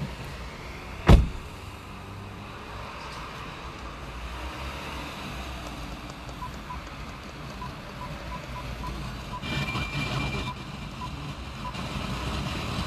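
Steady low hum inside a parked car, with one sharp loud click about a second in. From about six seconds on come a string of faint short beeps from the aftermarket Android head unit as the FM station is stepped, and a brief burst of hiss around ten seconds.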